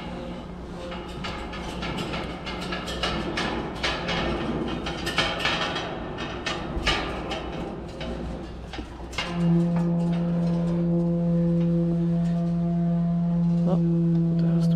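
Hands and boots knocking and clanking on the steel rungs and lattice of a tower crane's mast ladder during a climb down. About nine seconds in, a steady low hum with overtones sets in and holds.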